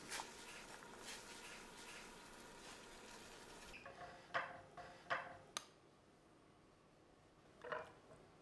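Faint hiss of a pot of salted water at the boil as tongs move white asparagus spears in it. Then, after a cut, three short clinks of silicone-tipped tongs against a ceramic plate in quick succession, and one more near the end.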